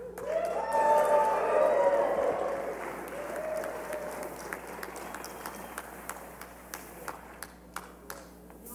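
Audience cheering and applauding, with shouts and whoops. The cheering swells in the first two seconds, then fades to a lower patter of clapping.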